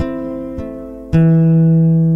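Nylon-string classical guitar fingerpicked, playing an instrumental melody. Single plucked notes ring over each other, and a loud low bass note is struck about a second in and left to ring.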